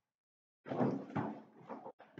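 Rustling and scraping of a large sheet of chart paper being handled, with a couple of knocks, starting about half a second in and lasting a little over a second.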